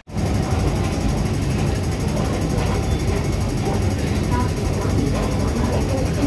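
Steady low rumbling noise of an underground railway station, with faint voices in the background.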